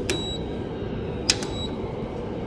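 Plastic staff ID card tapped against a door access card reader that is not accepting it: a light click at the start and a sharper, louder click just over a second in, with a faint high steady electronic tone and low background noise underneath.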